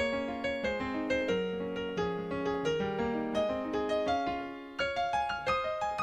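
Keyboard played alone with a piano sound: a classical-style chord progression in D-flat major, chord after chord, with the bass line stepping down the scale. A brief gap near the end, then a new chord.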